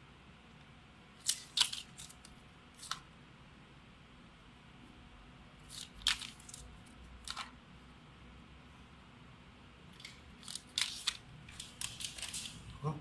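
Filled plastic sport gel sachets handled and set down on and lifted off a small stainless-steel digital scale: brief crinkles and light taps in a handful of short clusters, over faint room noise.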